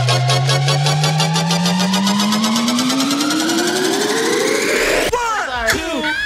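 Electronic funk track building up: a long rising synth sweep climbs over rapid, evenly repeated pulses. About five seconds in the build breaks off into a drop of bending, wobbling synth lines.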